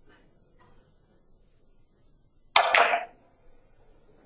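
Carom billiard balls striking during a three-cushion shot: a quick, loud cluster of sharp clicks about two and a half seconds in, after a few faint ticks.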